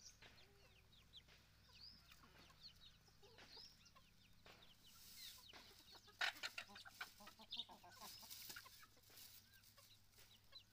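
Chickens clucking, faint, with many short high peeps that fit the chicks. About six seconds in comes a louder run of quick clucks that lasts a few seconds.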